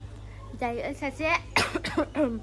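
A woman's short voiced sounds, then a quick run of coughs near the end.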